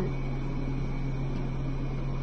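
A steady low hum with an even hiss underneath, unchanging throughout: indoor background noise.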